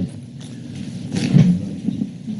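Low background noise of a meeting room during a pause in speech, with one short, low sound about halfway through.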